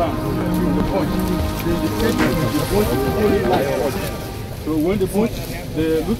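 Several people talking at once in overlapping, indistinct voices, with background music under them and a steady hiss.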